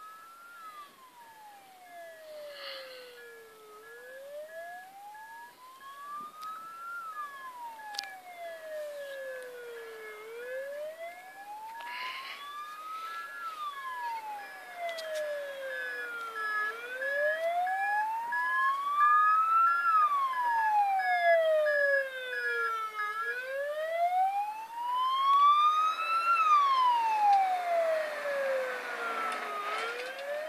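Ambulance siren on a slow wail, its pitch rising and falling smoothly about every six and a half seconds, five times over, and growing steadily louder as the ambulance comes closer. A faint steady high tone sounds alongside it until about three-quarters of the way through.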